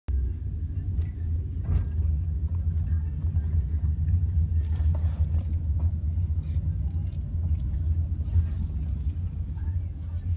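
Steady low rumble of a moving car, heard from inside the cabin: engine and tyre noise.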